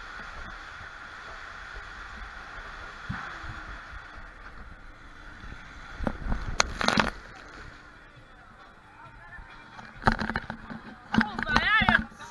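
An inflatable ring sliding down a water slide, with a steady rush of running water. About six seconds in come a few loud knocks and splashes. From about ten seconds there is more splashing and a rider's high, wavering shouts.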